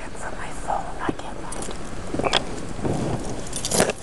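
Microphone handling noise: irregular rustles and scrapes with a few sharp clicks, under faint indistinct voices.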